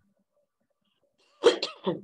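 A short, loud burst from a person's voice in two quick parts, about one and a half seconds in, after a near-silent stretch.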